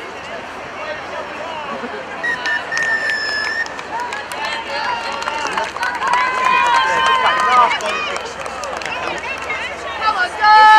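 Several high voices calling and shouting across an open sports field, overlapping one another, with a held high-pitched call about three seconds in and a louder burst of calls a little past the middle.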